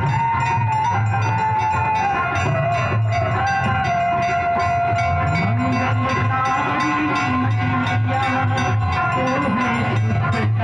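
Devotional Ganga aarti music: one voice singing long, sliding held notes over a steady, pulsing drum beat and regular metal percussion.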